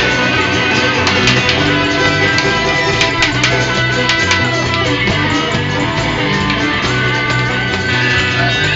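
Live band playing an instrumental break, with guitars to the fore.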